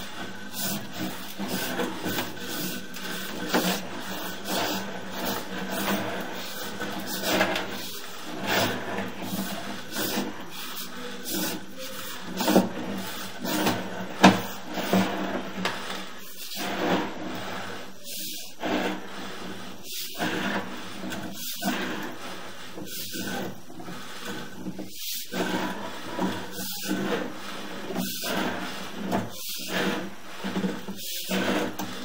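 Sewer inspection camera's push cable being fed by hand down a plastic sewer line: irregular knocks, clicks and scraping as the cable and camera head rub along the pipe, over a steady low hum.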